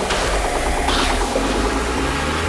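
Techno DJ set music in a stretch of droning synth and noisy texture, with a steady low drone and no clear beat.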